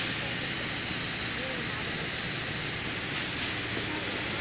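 Steady hiss of background noise, even and unbroken, with a faint voice heard briefly about a second and a half in.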